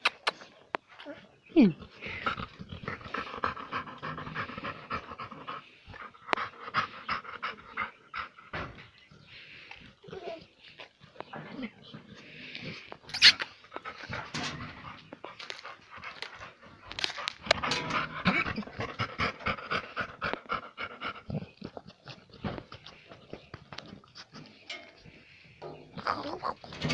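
Pit bull vocalizing in drawn-out whining stretches, one a couple of seconds in and a longer one about two-thirds of the way through, with many short quick sounds in between and one sharp click near the middle.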